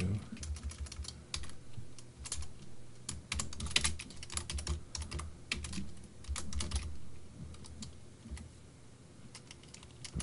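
Computer keyboard typing: a run of irregular keystrokes that thins out over the last couple of seconds.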